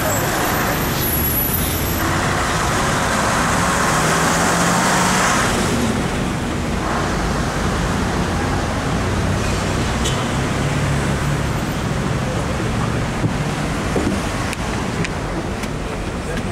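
Steady engine and road noise of a moving bus, with surrounding traffic; a louder rush of noise for a few seconds early on.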